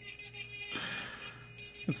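Nail file rasping across powder-coated fingernails in quick, repeated strokes as the nails are shaped.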